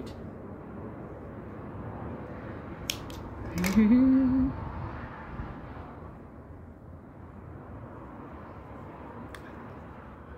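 Two quick snips of small scissors cutting crochet yarn just before three seconds in, followed by a woman's short rising hum, the loudest sound here, over a steady faint hiss.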